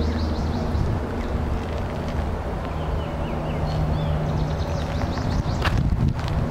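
Soft high-pitched peeping of Canada goose goslings, a few short falling calls at a time, over a steady low hum. A single sharp click comes near the end.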